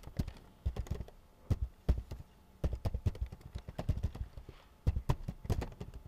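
Typing on a computer keyboard: quick runs of key clicks in several bursts, with short pauses between them.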